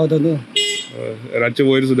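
A short single vehicle horn toot about half a second in, heard between stretches of a man's speech.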